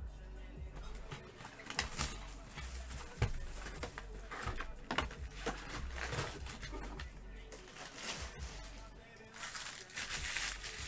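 Background music with a steady low beat, over knocks and rustling as a cardboard 2020 Bowman Jumbo hobby box is handled and opened. Foil card packs crinkle loudly near the end.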